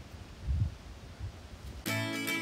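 A low rumble on the microphone, loudest about half a second in. Just before the end, acoustic guitar background music starts abruptly.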